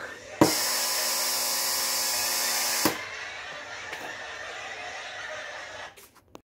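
Canned audience laughter and applause played back, loud for about two and a half seconds, then quieter until it fades near the end.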